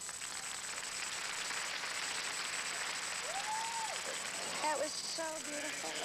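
Audience applauding as the waltz music ends, with a voice starting to speak over the applause about halfway through.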